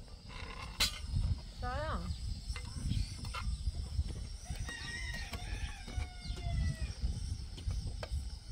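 A rooster crowing: a short wavering call about two seconds in, then a longer crow falling slightly in pitch from about five to seven seconds. A sharp click sounds near one second, over a steady low rumble.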